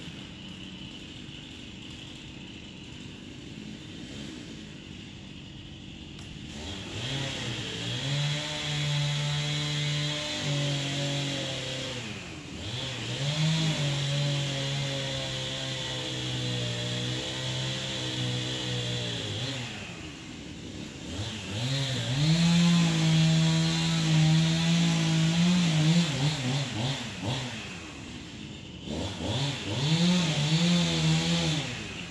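Chainsaw engine revving up to full speed and holding there for several seconds at a time, dropping back between runs, about four times in all after a quieter start.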